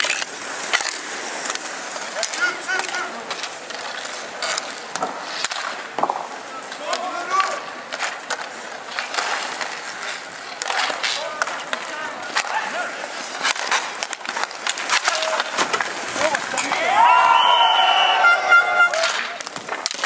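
Inline skate wheels rolling and scraping on a hard rink surface, with frequent sharp clacks of hockey sticks against the puck and each other. Players' voices call out now and then, with louder shouting near the end.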